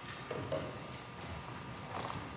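A few soft, low knocks with a brief murmured voice about a third of a second in.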